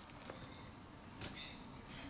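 Faint, light taps and scrapes of a plastic rice paddle scooping cooked rice into a glass bowl, with a couple of soft knocks about a third of a second in and just past a second.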